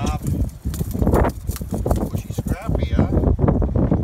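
Men's voices calling out on an open fishing boat, over a steady low rumble of strong wind on the microphone.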